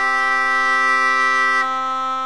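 Bagpipe struck up: a steady drone with a held chord of higher notes above it. The upper notes stop about a second and a half in while the drone sounds on.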